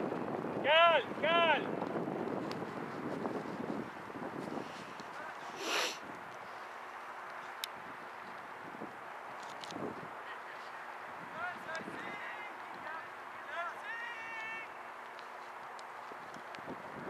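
Two short, loud, high-pitched shouts from a nearby spectator about a second in, then wind on the microphone with faint distant players' voices and a faint steady hum.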